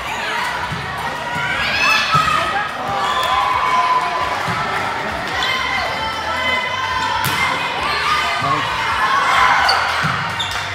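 Volleyball rally in a large gym hall: a few sharp hits of the ball against hands and arms, with players' and spectators' voices calling and chattering throughout, echoing off the hall.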